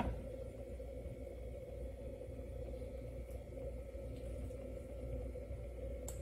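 Steady low background hum with a faint constant tone: room tone, with a brief click at the very start.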